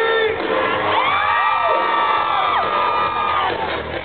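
Live hair-metal band playing, heard from within the audience, with a long held high note that slides up about a second in and holds for two seconds or so, over crowd cheering.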